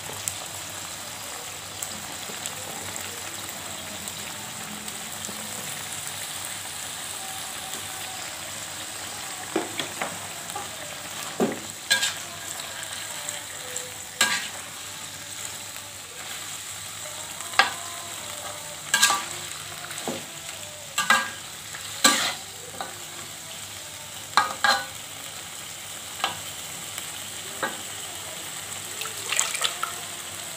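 Sliced jengkol frying in spice paste in a metal wok, sizzling steadily. From about ten seconds in, a metal spatula stirs the pan, knocking and scraping against the wok in repeated sharp clacks.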